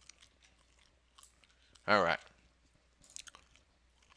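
Quiet room tone with a few faint, short clicks near the start, about a second in and again around three seconds in.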